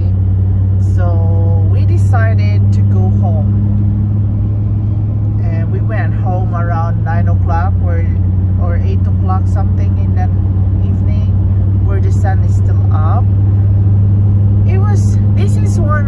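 Steady low drone of a car's engine and road noise heard inside the moving car's cabin, dipping slightly in pitch about seven seconds in.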